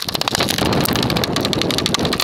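A pick hammer chipping at a solid block of ice: a fast, dense clatter of sharp strikes and cracking, splintering ice.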